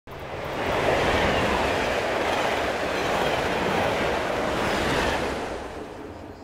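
High-speed electric train running fast along the track: a steady rushing noise of wheels on rails and air that swells over the first second and fades away over the last second.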